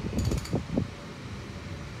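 Engine crankshaft being turned over by hand to move the intake valves: a quick run of sharp clicks and a few low knocks in the first second. A steady hum continues afterwards.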